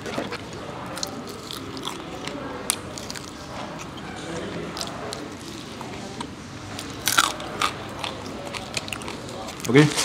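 A person eating crispy fried chicken by hand: picking meat off the bone and chewing, with scattered crunches and small clicks. The loudest, sharpest crunch comes about seven seconds in.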